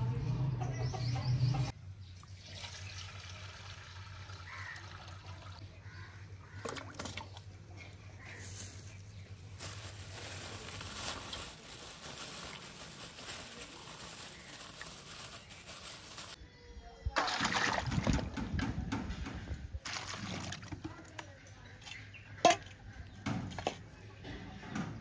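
Water poured and sloshed in a steel bowl as tomatoes, green chillies and onion are washed by hand. A louder stretch of pouring comes about two-thirds of the way through, and a sharp knock comes near the end.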